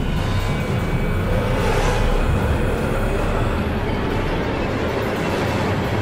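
Horror-film score: a loud, dense, rumbling dark drone that holds steady throughout.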